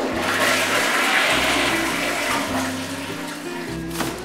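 A toilet flushing: a rush of water that is strongest in the first second or two and fades away by about three seconds in. Background music plays underneath.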